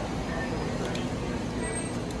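Steady background hum of a convenience store's room tone, with faint distant voices.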